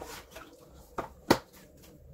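Handling of a boxed tarot deck and its guidebook: light rustles and taps, then a click and a single sharp knock a little over a second in as the book is set down on the table.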